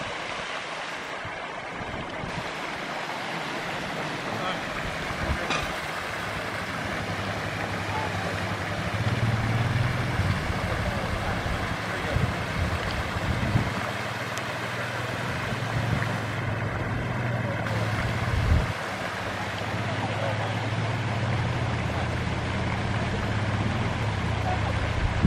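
Steady rush of splashing water from a floating pond aerator, with a low steady hum joining about a third of the way through.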